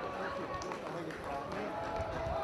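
Voices calling out and talking, several at once, over open-air football stadium ambience.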